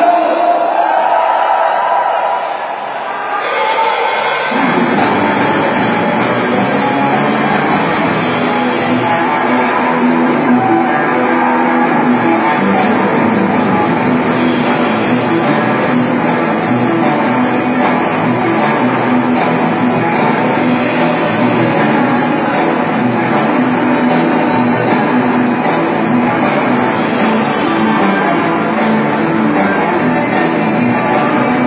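A live rock band playing electric guitars, bass and drum kit. It opens thinly, and the full band with drums and bass comes in about four seconds in, then plays on steadily.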